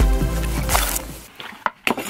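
Electronic house music fades out, then two sharp knocks come close together near the end as a measurement microphone drops out of a hand onto a glass desk.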